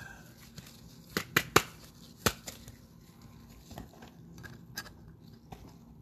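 A trading card being handled into a clear plastic card holder: a few sharp plastic clicks and taps, a quick run of them about a second in and another near the two-second mark, with softer taps and faint rustling after.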